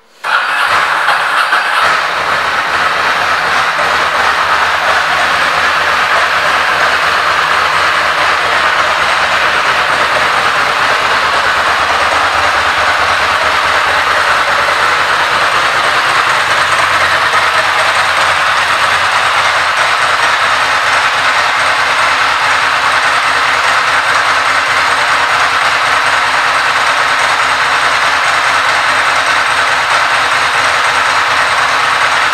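A 2002 Ducati Monster S4's V-twin engine is started with the electric starter and catches within about two seconds, then idles steadily through its stock silencers.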